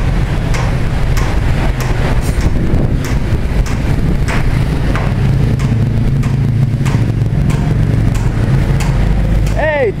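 Outdoor construction-site background: a steady low rumble with scattered clicks and scrapes, and voices in the background; a man's voice comes in at the very end.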